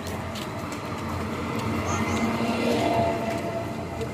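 Road noise swelling as a vehicle passes close, loudest about three seconds in, then easing off.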